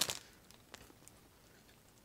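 A plastic filter patch bag crinkles briefly in the hands at the very start, then near quiet room tone with one faint tick just under a second in.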